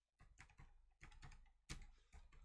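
Faint typing on a computer keyboard: a quick run of separate keystrokes entering a search term.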